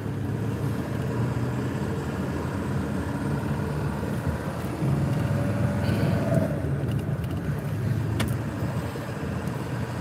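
Steady low rumble of a vehicle running, heard from inside its cab: engine and road noise.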